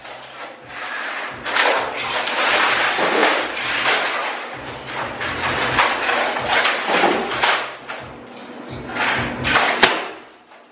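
Background music with repeated crashes of plastic electronics, such as a printer and keyboards, being smashed with a metal bar.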